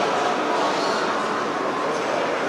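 Steady din of a busy exhibition hall: crowd noise and the hall's general roar, with no single sound standing out.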